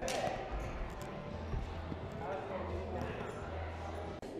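Indistinct voices echoing in a large indoor climbing gym, with a few dull thuds of hands and shoes against the wall and holds close to the microphone.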